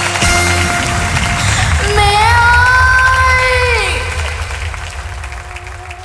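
A cải lương song with instrumental backing: a girl's voice holds one long sung note from about two seconds in, bending slightly up and then trailing off downward near the four-second mark, over steady sustained accompaniment tones that fade toward the end.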